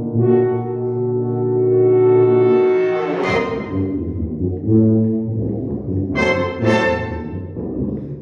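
Brass octet with tuba playing held chords that swell to a loud peak about three seconds in, followed by two short, bright accented chords near the end.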